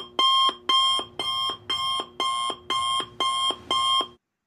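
Electronic alarm beeping in even pulses, about two a second, each beep a buzzy tone.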